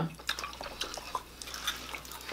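Quiet, scattered mouth clicks and smacks of people eating fried chicken wings with their fingers and licking their fingers.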